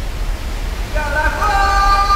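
Steady low rumble of a large waterfall, with background music coming in about a second in as several long held notes.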